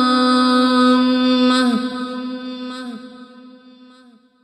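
A single voice chanting an Arabic supplication, holding one long drawn-out note. About halfway through, the note dips and fades away in an echoing tail.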